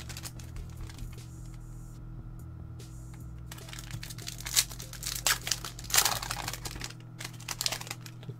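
Foil wrapper of a Yu-Gi-Oh Millennium Pack booster crinkling in the hands as it is opened, a quick run of crackles through the second half over a steady low hum.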